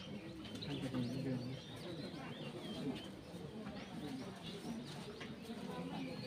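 Small birds chirping in quick rising and falling calls over a low murmur of voices, with a few light clinks of serving spoons against steel alms bowls.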